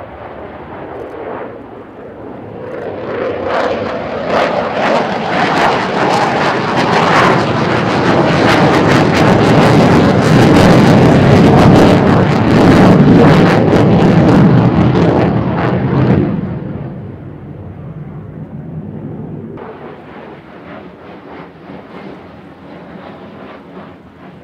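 Twin jet engines of a JASDF F-15J Eagle fighter (Pratt & Whitney F100s) in afterburner during a display manoeuvre. The sound swells to a loud, crackling peak about ten to fifteen seconds in, then falls away to a fainter, steadier jet noise.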